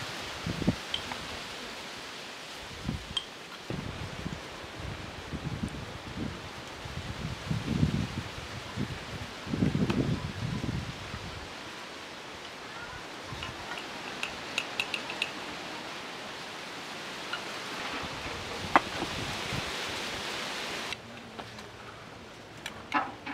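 Minced lamb frying in a large metal pan with a steady sizzling hiss, with low bumps and rumbles in the first half and a few light metal clinks of a spoon against the pan in the second half.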